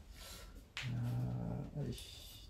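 A low vocal sound holding one level note for about a second, starting about three-quarters of a second in.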